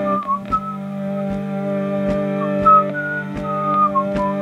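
A harmonium holds sustained chords while a whistled melody line slides and bends from note to note above them, with light clicks in between.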